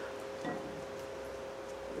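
A spoon scooping sour cream from its plastic tub into a glass bowl, heard as faint handling sounds with a light tap about half a second in, over a steady faint two-note hum in the room.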